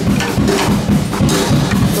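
Toddler hitting a child-size SPL drum kit with wooden drumsticks: a quick, uneven run of drum hits.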